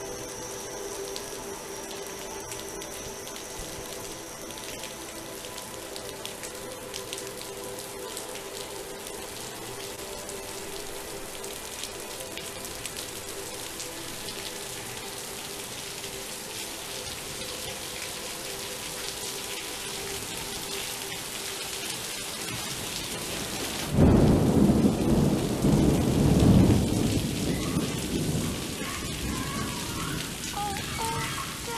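Rain with a sustained droning chord held underneath. Near the end a loud rumble of thunder breaks in suddenly and fades over several seconds.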